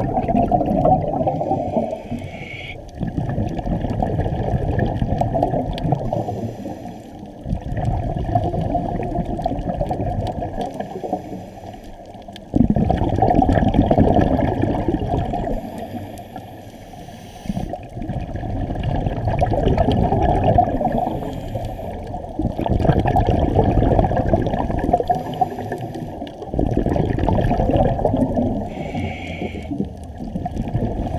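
A scuba diver's breathing through a regulator, heard underwater and muffled: rushes of exhaled bubbles come and go every three to five seconds, with quieter gaps between breaths.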